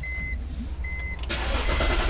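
Two short electronic chime beeps, then just over a second in the BMW E46's starter motor cranks the engine. The EWS immobiliser relay is bypassed with a 30 A fuse jumper, so cranking here shows the starter itself is good and a no-crank fault lies with the EWS.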